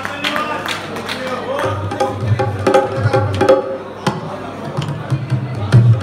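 Live band music: a keyboard playing sustained notes with tabla strikes, including deep bass-drum thumps.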